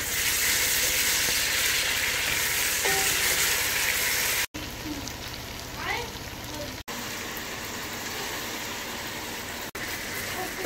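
Sliced onions frying in oil in a steel pot: a steady sizzle. It is louder over the first four and a half seconds and cuts out briefly a few times.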